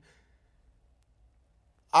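Near silence with a faint low room hum, then a young man's voice starts speaking again just before the end.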